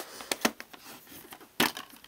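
Handling and opening a metal Blu-ray steelbook case: a few sharp clicks and taps with faint rustling between, the loudest at the start and about one and a half seconds in.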